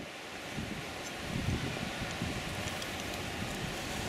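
Wind buffeting the microphone: a steady rushing noise with an uneven low rumble, a little louder from about a second in.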